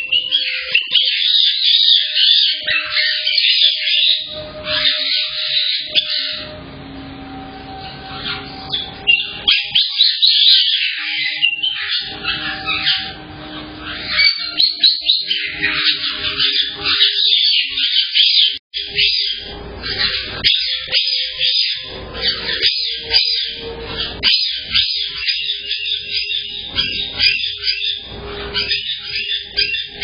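Caique parrots calling in a room, with near-continuous high-pitched chirps and screeches and a few held whistled notes lower down. Heard through a security camera's thin-sounding microphone.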